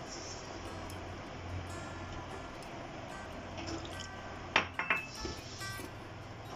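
Hand mixing flour, egg and water into dough in a mixing bowl, mostly soft. About four and a half seconds in come a few sharp clinks against the bowl. A low steady hum runs underneath.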